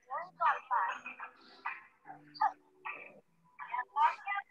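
A woman's voice speaking in short phrases over video-call audio, thin like a telephone line.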